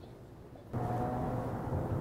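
Quiet room tone, then about two-thirds of a second in an abrupt cut to outdoor city street ambience: a steady low hum of distant traffic.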